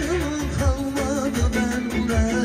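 A man singing into a microphone through a PA, with a wavering, ornamented melody, over amplified backing music with a steady drum beat.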